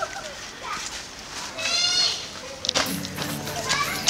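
Young people laughing, with one high-pitched, wavering squeal of laughter about halfway through.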